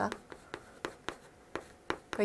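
Chalk writing on a chalkboard: a string of short, sharp taps and scrapes, about eight in two seconds, unevenly spaced as characters are written.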